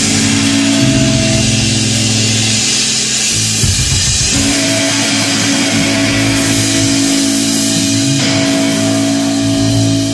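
Live rock band playing loudly: a Telecaster-style electric guitar and a bass guitar hold long sustained notes over the steady wash of cymbals from a drum kit.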